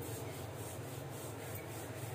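Faint, continuous rubbing over a steady low hum, from work with the hands on the kitchen counter beside the stove.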